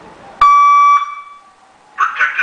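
Clifford G5 car alarm siren giving a single loud, steady electronic beep that starts abruptly about half a second in, lasts about half a second and then dies away. It is the alarm's warning tone, sounded ahead of the voice module's spoken warning.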